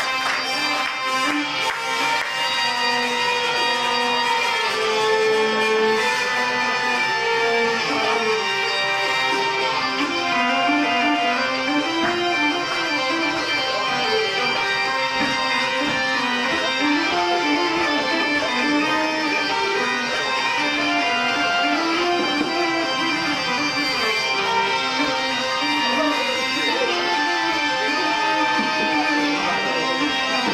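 Two hurdy-gurdies and an accordion playing an instrumental folk tune live, the melody moving over steady drones.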